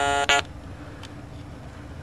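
A reproduction Stylophone pocket synthesizer holding one buzzy note with its vibrato switched on, the pitch wavering. It stops with a click about a third of a second in, leaving a faint hiss.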